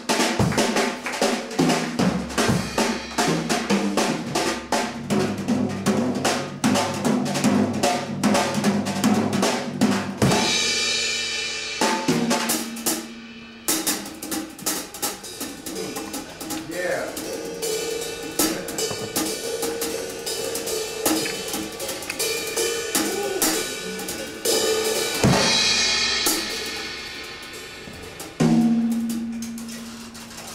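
Jazz drum solo on a drum kit: fast, dense strokes across snare, toms and bass drum, with cymbal crashes that ring out about ten seconds in and twice more near the end.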